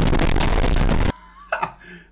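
Loud, noisy audio of a truck dashcam clip that cuts off abruptly about a second in, followed by a man's brief laugh.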